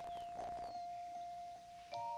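Cartoon underscore music: a single held note with a few faint, light descending glides over it. A new chord comes in at the very end.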